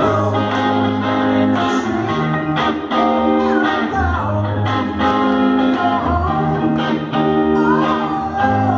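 A soul band playing live, heard from the crowd in a small club: electric guitar over sustained keyboard chords and low bass notes, with a singer's voice sliding between notes.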